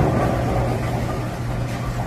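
Bowling alley background noise: a steady low machine hum and rumble.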